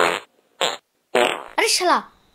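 Comic fart sound effects, one after another: a long noisy fart ending just after the start, a short one about half a second later, then pitched farts that swoop down in tone through the second half.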